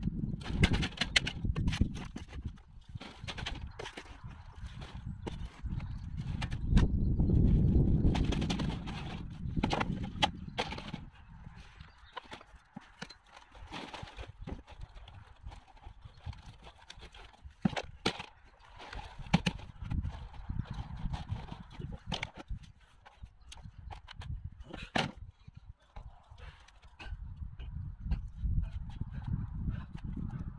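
Garden soil being rubbed by gloved hands through a wire-mesh sieve over a plastic pot: a gritty scraping with many scattered clicks and knocks, under bursts of low rumbling that are heaviest in the first third and again near the end.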